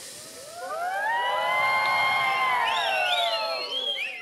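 Studio audience giving a long collective "oooh" in many voices, reacting to a risqué punchline: the voices rise together in pitch, hold, then fall away over about three seconds, with a few higher whoops near the end.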